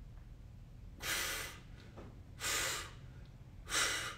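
A man breathing hard: three short, forceful breaths about a second and a half apart while he holds a stick pressed overhead under muscular tension.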